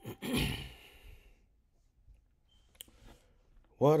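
A man's long sigh, a breathy exhale lasting about a second near the start, fading out into quiet. Near the end a man's voice starts singing a hymn.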